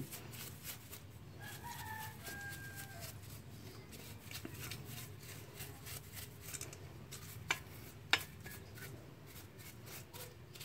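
A rooster crows once, faintly, a little over a second in. Under it are the quiet sounds of a paintbrush scrubbing a motorcycle carburetor body over a metal bowl, with two sharp clicks about half a second apart near the end.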